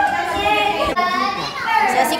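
Several young people's voices talking and calling out over one another, excited and lively.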